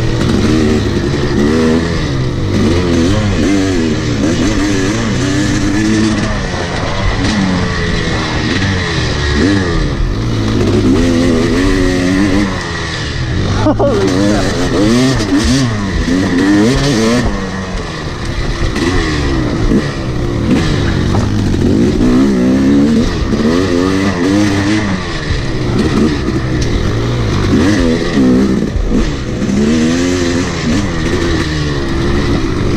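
Yamaha YZ250 two-stroke dirt bike engine heard on board while riding, revving up and dropping back again and again with the throttle and gear changes.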